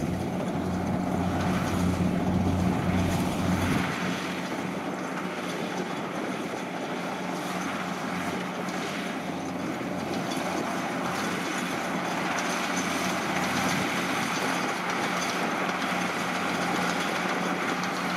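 Kubota DC-60 rice combine harvester running steadily as it harvests. Its diesel engine drones under load beneath a dense rush of cutting and threshing noise. The deepest part of the drone thins out about four seconds in.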